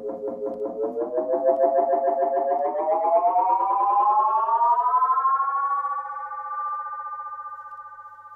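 Roland RE-201 Space Echo tape echo in self-oscillation, its feedback making a pulsing, pitched drone that glides steadily upward to about twice its pitch as the knobs are turned, holds, then fades away near the end.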